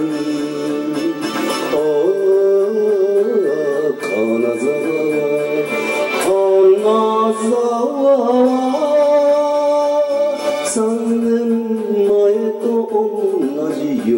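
Enka song from 1969: a male voice singing with heavy vibrato over orchestral backing.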